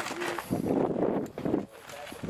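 Indistinct voices of people talking.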